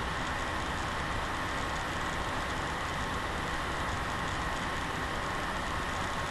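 Steady, even hiss with a faint steady whine: the background noise of a webcam microphone in a quiet room.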